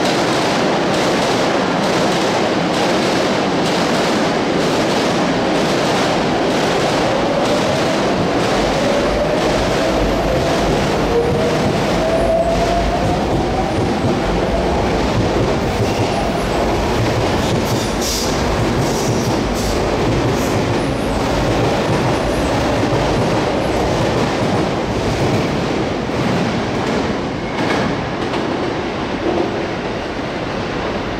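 Sotetsu electric commuter train running close by on the station tracks: steady rolling noise with regular clicks of wheels over rail joints and points, and a rising motor whine in the first half as it accelerates. A brief high wheel squeal a little past the middle.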